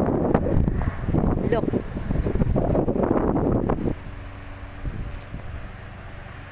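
Wind buffeting the microphone, a loud low rumble that drops away suddenly about four seconds in, with one spoken word over it.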